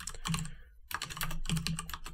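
Computer keyboard typing: a quick run of keystrokes, with a short pause just under a second in before the keys start again.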